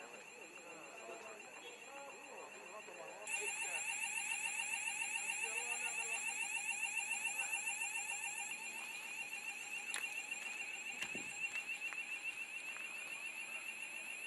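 An electronic alarm sounds a high, fast-warbling tone, starting abruptly about three seconds in and then running steadily. Faint voices are heard before it starts.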